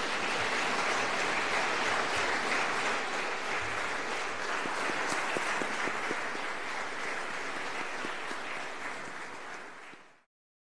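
A large audience applauding, a dense steady clatter of many hands that eases off near the end.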